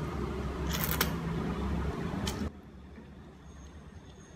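Ramen noodles being slurped up from chopsticks close to the microphone: a dense, rumbly sucking noise with a few sharp smacks, cutting off suddenly about two and a half seconds in.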